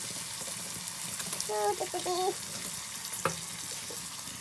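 Food sizzling as it fries in a metal pan over a wood fire, a steady hiss, with a single sharp knock about three seconds in.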